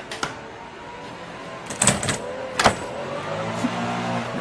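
A lawnmower engine running, its low hum coming up strongly about three seconds in. Two sharp knocks come a little before it and are the loudest sounds.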